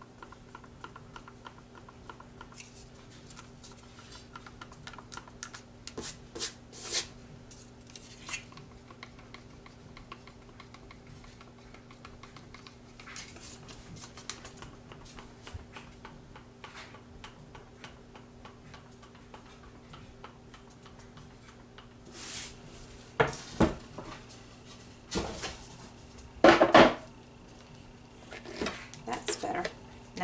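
Wooden stir stick ticking and scraping against the inside of a plastic cup as two-part epoxy resin is stirred: soft, rapid, irregular clicks over a steady low electrical hum. Near the end come a few louder knocks and rustles.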